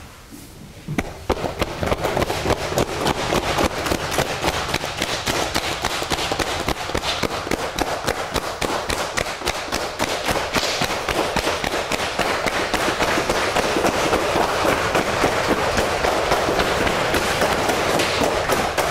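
Cupped hands slapping up a leg in qigong cupping self-massage: a rapid, continuous run of sharp slaps that starts about a second in and holds a steady level.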